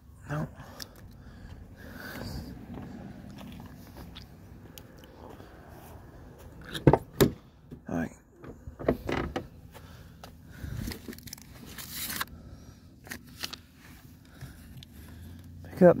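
Scattered clicks, knocks and rustling from handling things in and around a car, the sharpest click about seven seconds in, with a few low mutters.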